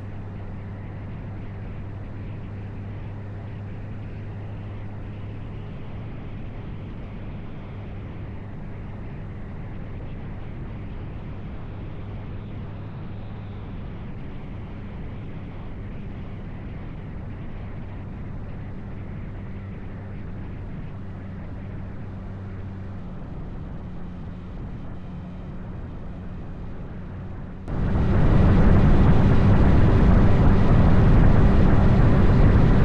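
Motorcycle engine running steadily at cruising speed, a constant low hum under road and wind noise. Near the end the sound jumps suddenly much louder into a heavy rush of wind and engine noise.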